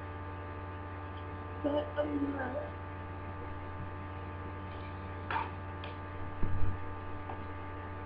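Steady electrical mains hum running under everything, with a brief low murmur about two seconds in, a click, and a dull bump about six and a half seconds in that is the loudest sound.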